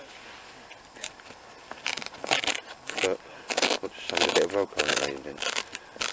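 Fabric of a homemade roll-top stuff bag rustling and scraping in short bursts as a hand opens it and rummages inside, with a man's indistinct speech over it in the second half.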